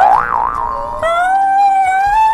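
Cartoon "boing" sound effect with a pitch that wobbles up and down, followed about a second in by a long, held comedy tone that rises slightly.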